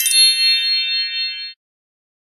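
A bright chime sound effect: several high tones ringing together, held steady, then cut off suddenly about a second and a half in.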